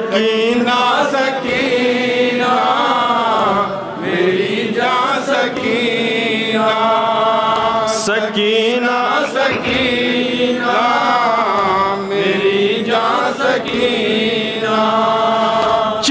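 A man chanting a mournful elegy in a melodic voice through a microphone, in long held phrases that bend and waver in pitch, with short breaks for breath.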